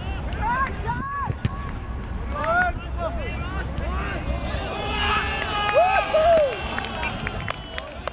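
Several voices shouting excitedly as a goal is scored, in short rising-and-falling calls that peak about five to six and a half seconds in, over a steady low wind rumble on the microphone.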